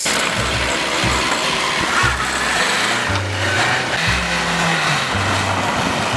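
Small car driving off along a muddy track, its engine and tyres in the mud making a dense, steady noise that starts abruptly, over background music with a repeating bass line.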